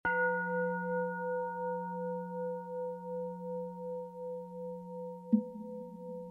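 A Tibetan singing bowl struck once, ringing with a low hum and several higher overtones that die away slowly with a wavering pulse. Near the end a second short strike sounds.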